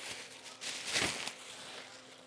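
Plastic bag wrapping rustling, loudest about a second in, over a faint steady hum from the mini evaporative air cooler's fan running on its lowest speed.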